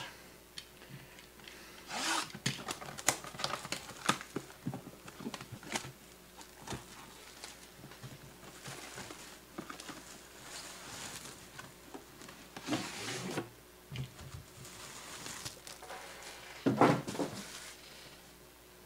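Trading-card box packaging and cards being handled: rubbing and rustling with scattered light clicks and taps, in a few louder bursts.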